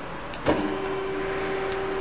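Amada HA250W horizontal band saw switched on from its control panel: a click about half a second in, then a steady electric motor hum.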